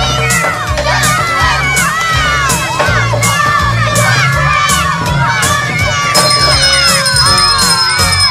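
A group of children shouting and cheering over music with a steady beat and bass line. About six seconds in, a steady high-pitched tone joins in.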